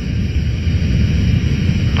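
Steady low rumble of cockpit noise aboard the Antonov An-225 (engine and airflow noise) during the flare, a few metres above the runway just before touchdown.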